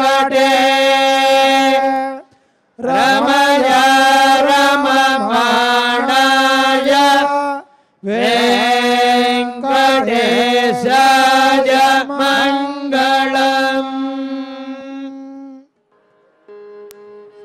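Devotional Hindu chanting over a steady drone, in three phrases with short breaks between them, the last one fading and then stopping shortly before the end.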